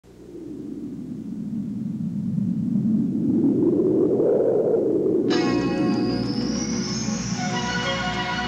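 A whooshing, wind-like swell of noise builds and then eases off over the first five seconds. Then a sustained synthesizer chord comes in suddenly and holds, the start of the commercial's music.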